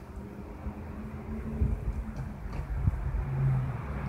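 A road vehicle's engine runs at a low, steady hum on the street. It grows louder in the second half.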